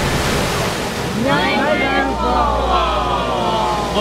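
Niagara's Horseshoe Falls: a steady rush of falling water. From about a second in, voices call out over it in long, gliding tones.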